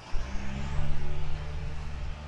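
A motor vehicle's engine running close by with tyre hiss: a steady low hum that comes in suddenly just after the start and is loudest about a second in.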